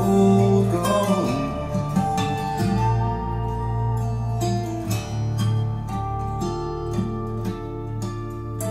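Instrumental close of a song, acoustic guitar notes ringing out with no singing, played through Infinity Reference 61i floor-standing speakers.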